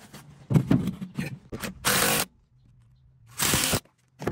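Light clicks and knocks of hands working a rubber suction hose and its clamp onto the pipe fittings, followed by two short bursts of hiss about two and three and a half seconds in.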